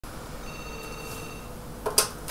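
Corded desk telephone ringing: one electronic ring of steady high tones lasting about a second, then a sharp clack near the end, the loudest sound.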